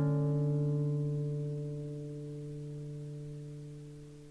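A single acoustic guitar chord ringing out and slowly dying away, in an interlude of music.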